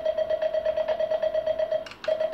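Morse sidetone sounding a rapid, even string of dots, about a dozen a second, keyed by the automatic dot arm of a semi-automatic telegraph key (bug). The dot string stops shortly before the end.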